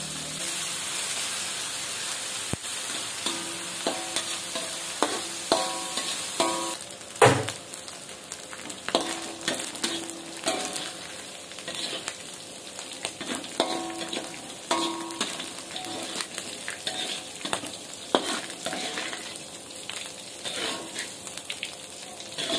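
Small dried anchovies (teri medan) frying in hot oil in a metal wok, a steady sizzle, with a metal spatula scraping and clinking against the wok throughout; many of the knocks ring briefly, and the loudest comes about seven seconds in.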